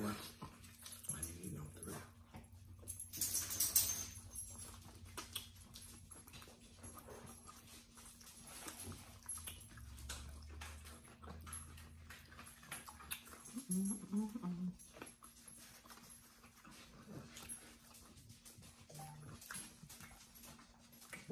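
A dog whimpering faintly now and then during quiet eating, with a short rustle a few seconds in.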